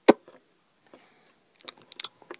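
Small plastic Littlest Pet Shop figure handled and set down on a wooden surface: one sharp click at the start, then a quick run of lighter taps and clicks near the end.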